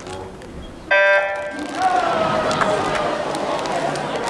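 A swim race's starting horn sounds once, a loud buzzing tone lasting under a second about a second in, signalling the start. Spectators then break into loud cheering and shouting.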